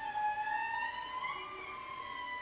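A string chamber orchestra of violins, violas and cellos playing. A high bowed note slides upward in pitch about halfway through and is then held.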